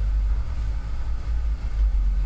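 Studio room tone: a steady low hum with little else above it.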